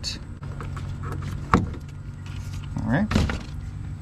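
Plastic wiring-harness connector of a truck's door mirror being unplugged: one sharp click about one and a half seconds in, with a few fainter clicks and rustles around it, over a steady low hum.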